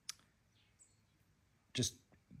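A single sharp click at the very start, followed by quiet room tone.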